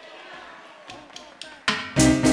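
Low hall noise with faint voices and a few light clicks, then near the end a Latin dance orchestra comes in loudly with brass, bass and percussion, starting the next number.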